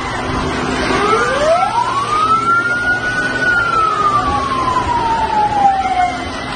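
A siren winding up, one long slow rise in pitch over about two seconds, then slowly falling, over steady background noise.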